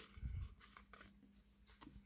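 Faint handling of trading cards in a quiet small room, with a soft low thump about a quarter second in and a couple of faint ticks. A faint steady hum sits underneath.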